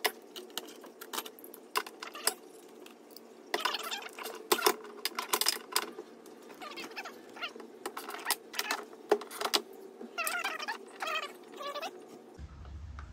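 Ratchet wrench with a socket and extension clicking in bursts as the 10 mm door-mirror bolts are backed out, with metallic clinks of the tool and bolts between the bursts.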